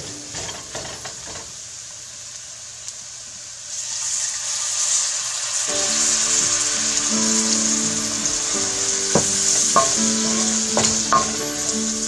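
A wooden spatula stirs curry powder and fried aromatics in a hot nonstick wok. From about four seconds in, a little water poured into the pan sets off a loud, steady sizzle, with a few knocks of the spatula on the pan near the end.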